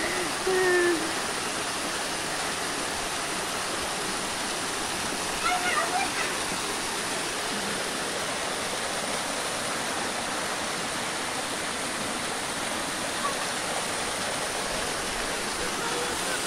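Steady rush of shallow stream water running over rocks, with a couple of short voices calling near the start and around the middle.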